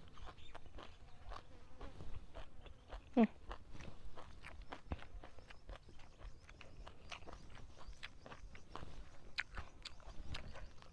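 Close-miked chewing of a mouthful of rice with pounded chili-pork dip, many short wet mouth clicks. About three seconds in comes a single brief, loud squeak that falls in pitch.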